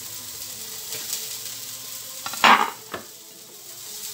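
A steady sizzling hiss like food frying in a pan. About two and a half seconds in there is one brief, loud rustle as rolled crêpes are handled over a plate, followed by a small click.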